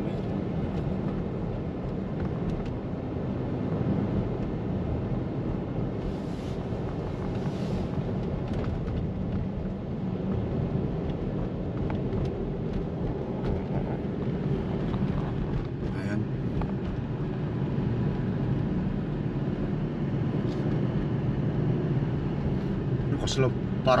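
Steady road and engine noise of a moving car, heard inside the cabin as a constant low rumble.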